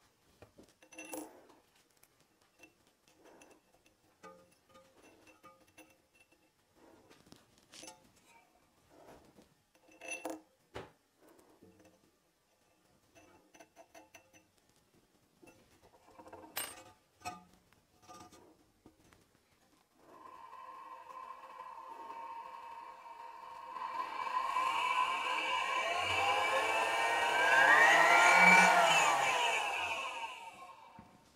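Light clicks and clinks as the disc holder is fitted to the shaft of the home-built slow-speed carbide grinder, then about two-thirds in the grinder's drive motor starts with a steady whine that grows louder and sweeps up and back down in pitch as its speed is raised and lowered, peaking near the end.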